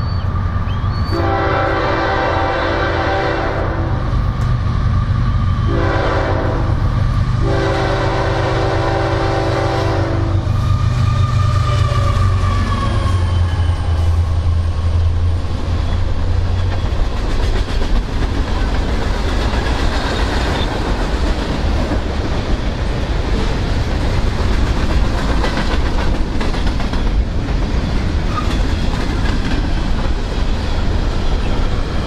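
Diesel freight train approaching and passing. The locomotive's air horn sounds a chord three times in the first ten seconds, the middle blast shorter. Then the low drone of the locomotives' diesel engines goes by, followed by the steady rumble and clickety-clack of freight cars rolling past.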